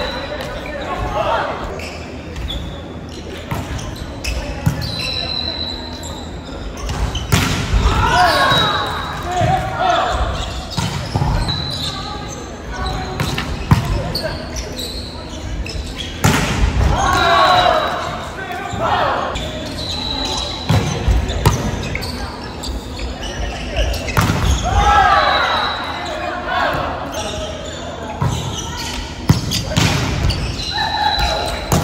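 Volleyball rally in a large gym: sharp smacks of hands striking the ball, scattered through the rally, with players calling and shouting between hits, all echoing in the hall.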